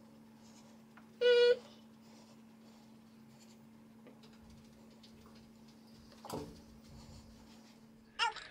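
One short, high, steady-pitched vocal sound about a second in, lasting about a third of a second, against a quiet room with a low steady hum. A single soft click comes about six seconds in.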